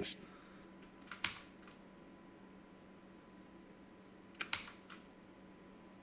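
A few faint, sharp clicks from a computer keyboard or mouse at the desk: a couple about a second in and a short cluster about four and a half seconds in, with quiet room tone between.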